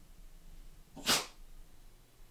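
A dog sneezing once, a short sharp burst of air about a second in.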